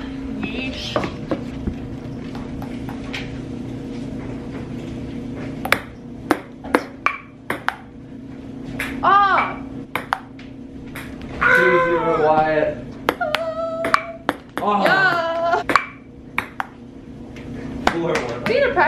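Table tennis rally: an orange plastic ball clicking sharply off the paddles and tabletop, about two hits a second, starting about six seconds in. A steady low hum runs underneath.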